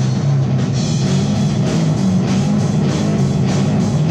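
A live rock band playing: electric guitar, electric bass and drum kit, with sustained low notes under a steady beat of cymbal strokes.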